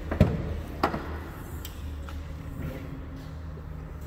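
Trunk lid of a 2011 Dodge Challenger being unlatched and opened: a sharp latch click just after the start, then a second, softer click about a second in, over a steady low background hum.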